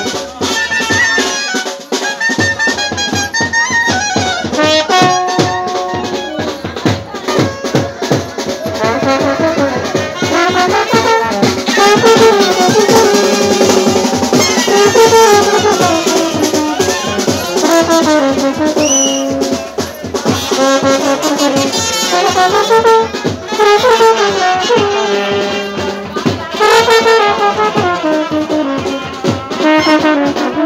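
Live Indian wedding brass band (band party) playing a dance tune: brass horns carry the melody over a steady drum beat.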